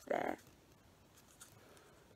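Faint rustling and rubbing of magazine paper as the flap of an origami heart is tucked into its pocket, with a brief breathy vocal sound just after the start.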